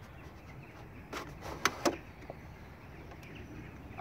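Plastic milk-carton lantern being lifted off its wooden stake: a few short clicks and scrapes of plastic on wood between one and two seconds in, the loudest two close together.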